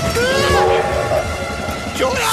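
Cartoon train horn hooting over a low, rhythmic rail rumble. The hoot rises in pitch just after the start and holds for about half a second.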